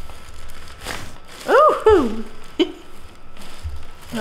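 Chiropractic neck adjustment: a couple of quick cracks from the neck joints amid rustling of clothing on the table. Halfway through comes a woman's wordless vocal exclamation that rises and falls in pitch.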